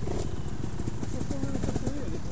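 Trials motorcycle engine running with a steady low pulsing.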